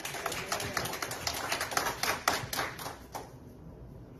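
Scattered hand-clapping from a small church congregation, a quick irregular patter that dies away about three seconds in, leaving quiet room tone.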